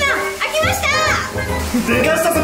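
A young woman's excited, high-pitched exclamation over background music.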